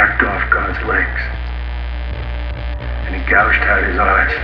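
A steady low electrical hum, like amplifier mains hum, runs under the quiet intro of a sludge/doom metal track. A sampled spoken voice talks in short phrases over it at the start and again near the end.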